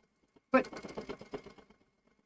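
Domestic sewing machine free-motion quilting: a quick run of needle clicks that grows fainter and dies away before the end, as the stitching slows to a stop.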